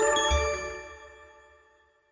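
Short closing logo jingle of a news channel: a cluster of bell-like chime tones sounding together, ringing out and fading away over about two seconds, with a brief low thud about a third of a second in.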